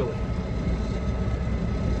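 Low, steady rumble of a truck's engine idling, heard from inside the cab.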